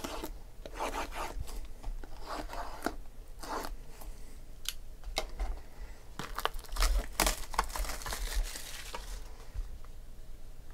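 Cardboard trading-card boxes being handled and opened: irregular tearing, crinkling and tapping of cardboard and wrapping, busiest about seven to eight seconds in.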